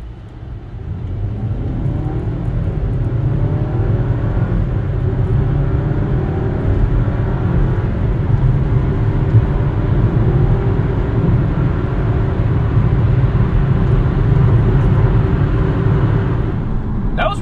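2023 Dodge Hornet GT's Hurricane4 turbocharged four-cylinder under full-throttle acceleration from a standstill, heard from inside the cabin. The engine note climbs in pitch through each gear and drops back at every upshift, several times over, while the overall sound grows louder during the first couple of seconds and then holds.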